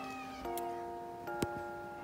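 A kitten mewing, one high falling call early on, over background music with sustained chords. There is a sharp click about one and a half seconds in.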